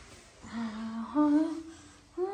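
A woman humming a slow lullaby in two long held notes, the second stepping up in pitch about a second in.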